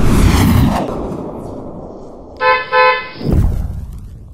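A loud low rumble from an animated intro fades away in the first second. Then a vehicle horn honks twice in two short beeps, followed by a low boom that fades out.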